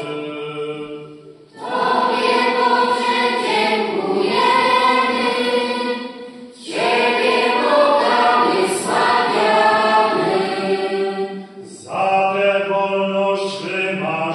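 Children's choir singing a song in phrases, broken by three short pauses for breath.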